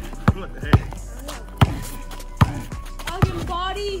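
Basketball dribbled on a concrete driveway: about five sharp bounces at uneven intervals.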